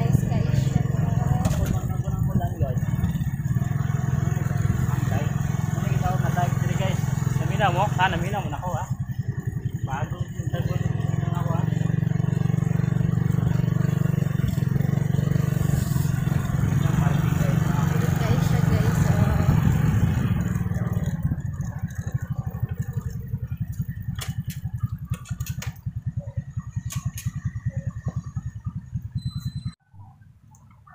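Suzuki Raider J 115 Fi motorcycle, a single-cylinder four-stroke, running steadily while ridden with two people aboard. Its sound fades and thins out after about twenty seconds.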